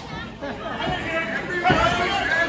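Ringside crowd chattering and calling out in a small hall, several voices overlapping, with a single thump about three-quarters of the way through.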